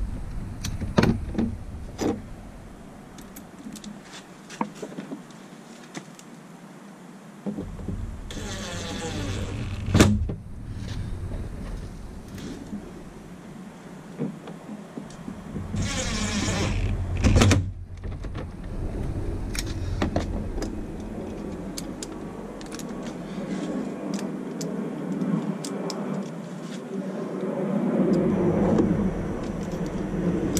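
Cordless power driver running two short bursts of about a second each, about eight and sixteen seconds in, as it drives the screws at the bottom of a truck's door trim panel. Sharp clicks and knocks of the plastic panel and screws being handled come in between.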